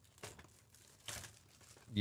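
Faint crinkling and rustling of trading-card box packaging as it is handled, in two soft bursts about a quarter second and a second in.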